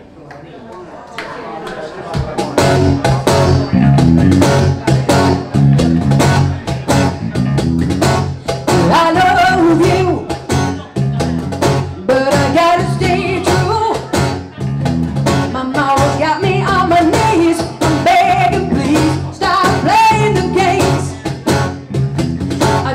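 Small live acoustic band playing a song: electric bass, acoustic guitar and a cajon keeping a steady beat. It starts quietly and the full band comes in about two seconds in, with a woman singing lead from about eight seconds in.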